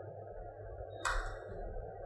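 A low, steady background hum, with a single short, sharp keyboard keystroke about a second in.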